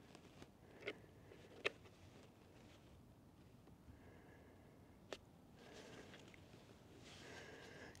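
Near silence, with three faint clicks from hands working a handheld drone radio transmitter: about a second in, just under two seconds in, and about five seconds in.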